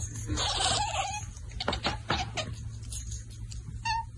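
Kitten meowing: a raspy, drawn-out cry in the first second, then a few sharp taps, and short high chirps near the end, over a steady low hum.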